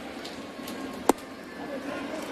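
Steady ballpark crowd murmur, with one sharp pop about a second in: a knuckle curveball smacking into the catcher's mitt.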